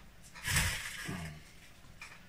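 A man breathing out heavily through his nose and mouth, about a second long, ending in a short low hum.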